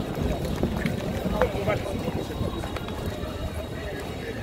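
Outdoor ambience of indistinct voices over a continuous low rumble, as from a handheld microphone carried through an open plaza.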